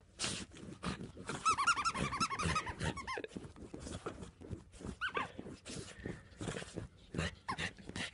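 A small dog digging and scratching at a duvet with its paws, quick rustling scratches, with bursts of short high whines in between, about a second in and again around the middle and near the end.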